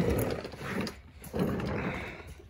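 Scraping and rattling of a plastic oil drain pan being slid across a concrete floor into place, in a few short stretches.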